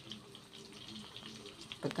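Faint sizzling of zucchini-and-mince patties frying in vegetable oil in a pan: a low hiss with scattered light crackles.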